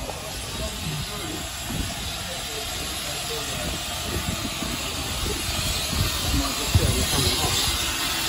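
A 15-inch gauge steam locomotive hissing steam while standing at the platform, the hiss getting louder in the second half as the locomotive comes close.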